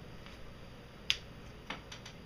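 Sharp click of a control being pressed on an Akai GX-77 reel-to-reel tape deck, followed by two fainter clicks over the next second.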